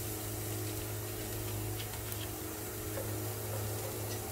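Onion, garlic, ginger and spices frying gently in a stainless steel pot, a faint steady sizzle over a constant low hum, with a few light ticks.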